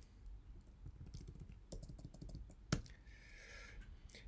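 Faint typing on a computer keyboard, a new file name being keyed in, with one sharper key click about two thirds of the way through.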